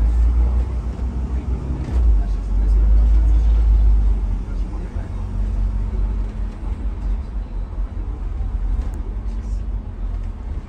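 Double-decker bus heard from the upper deck: a steady low engine and road rumble as it drives in traffic, heaviest about two to four seconds in and then easing a little.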